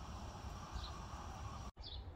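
Outdoor garden ambience with no clear foreground sound: a short, high, falling bird chirp about a second in, over a faint steady high hiss and a low rumble. The sound cuts out abruptly near the end.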